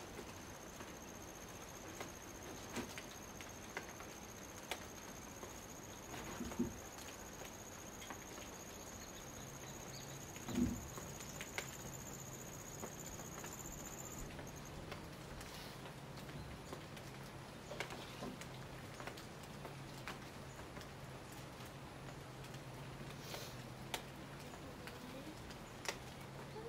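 Light rain in rain-forest foliage: a faint steady hiss with scattered drops falling irregularly. A thin, steady high whine runs alongside and cuts off abruptly about halfway through, and a low steady hum comes in about a third of the way in.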